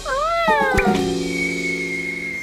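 A cartoon cat's meow that rises and then falls, followed from about a second in by a held musical chord with a steady high note.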